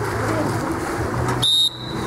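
A referee's whistle gives one short, steady, high-pitched blast about one and a half seconds in, over steady background noise.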